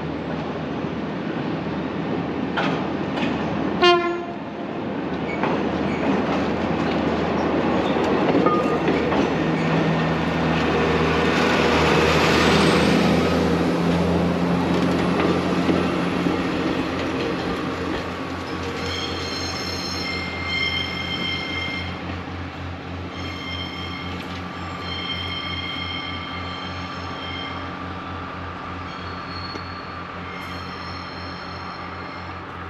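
Diesel passenger railcar running along the line, its engine droning steadily and its noise swelling as it passes, loudest about twelve seconds in. A short sharp sound comes about four seconds in. In the second half, high-pitched steady tones from the train sound on and off in several stretches.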